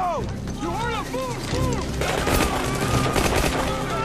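Battle sound effects: men yelling in short shouts, then dense gunfire of rifles and a machine gun crackling rapidly from about two seconds in.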